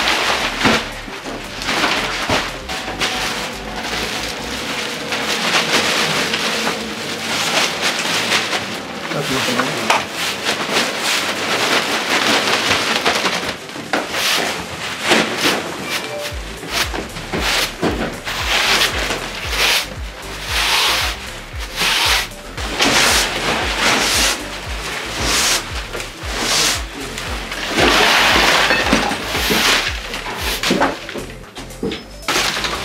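Large plastic garbage bag rustling as it is filled and handled. Then a broom sweeps dust and debris across tatami mats in repeated strokes, about one a second.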